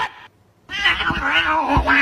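A domestic cat yowling: a short rising cry right at the start, then after a brief pause one long, loud yowl whose pitch wavers, typical of a cat protecting its spot as someone reaches for its pillow.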